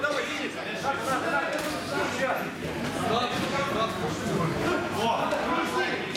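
Mostly speech: several people talking over one another throughout.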